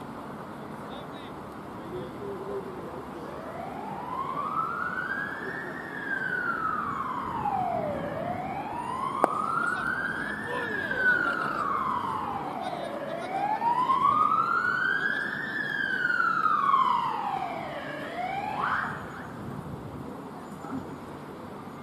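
An emergency vehicle siren wailing, its pitch rising and falling slowly, about five seconds per cycle, for three cycles. It grows louder toward the middle and then fades, ending in a quicker upward sweep. A single sharp knock sounds about nine seconds in.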